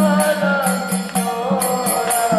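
Devotional kirtan: voices chanting a wavering melody over a steady low drone note, with small hand cymbals striking about twice a second.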